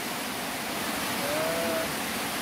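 Heavy rain falling steadily: a dense, even hiss. A short faint voice sound rises briefly about one and a half seconds in.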